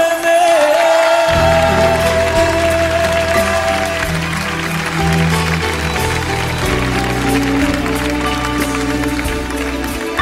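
Music from a Neapolitan pop ballad in an instrumental passage. A long held melody note carries over and fades out about four seconds in. Bass and fuller accompaniment come in about a second in.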